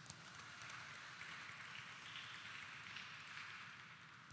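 Faint applause from the congregation, a soft even patter that dies away near the end.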